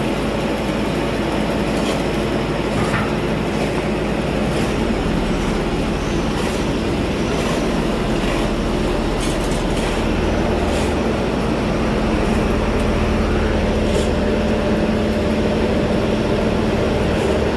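Asphalt paving machine's diesel engine running steadily with a low drone. A few short clicks sound over it.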